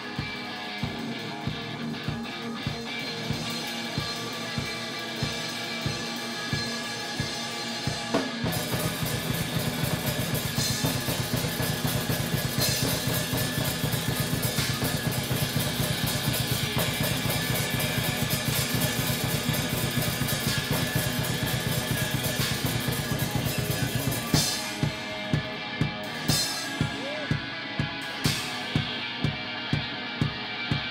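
Electric guitar and drum kit playing loud live music together. A steady drum beat opens, then about eight seconds in the playing turns dense and fast, and after one loud hit near the end the steady beat returns.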